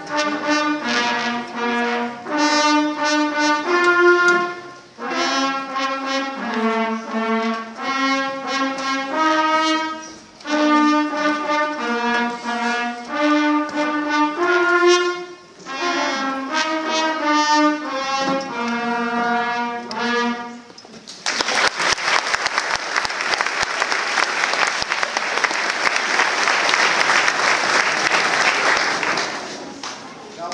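Fifth-grade concert band with trumpets playing a tune in short phrases with brief breaks. The piece ends about two-thirds of the way through, and the audience applauds.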